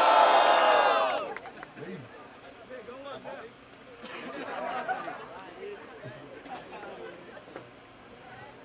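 Crowd of spectators shouting and cheering loudly, dying down after about a second into murmured chatter. The cheer is the crowd's vote: they make noise for the rapper they think won the round.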